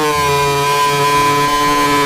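A loud, buzzy drone held on one pitch, rich in overtones. It sags slightly at the start, then holds steady.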